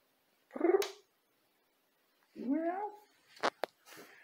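A domestic cat meowing twice, two short calls with a wavering pitch, which the owner takes for asking for food.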